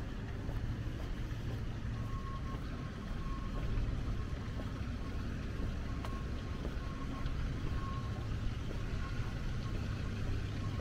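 Steady low rumble of distant city traffic, with a faint high-pitched beeping tone that comes and goes from about two seconds in.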